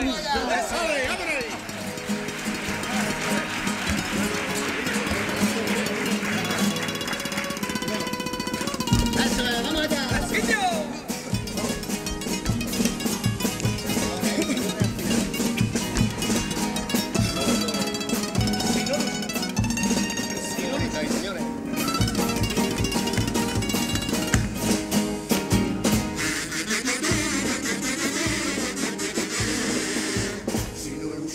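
Carnival comparsa playing the instrumental introduction to a pasodoble: Spanish guitars with a steady drum beat that comes in about ten seconds in. Crowd noise sounds over the opening seconds.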